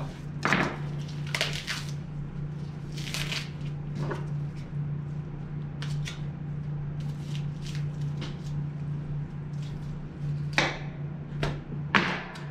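A knife slicing and scraping through the sinew and fat cap on elk meat, in short, scattered strokes, with gloved hands handling the meat. A steady low hum lies under it.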